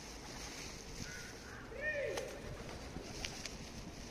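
Outdoor ambience around a feeding flock of pigeons: a steady hiss with a few faint taps, and a short rising-then-falling voice-like call about two seconds in, the loudest sound.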